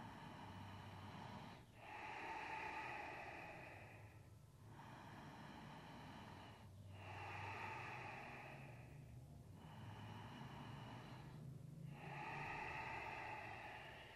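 A man's slow, deep yoga breathing: long audible inhales and exhales of about two seconds each, about six in all, with short pauses between them.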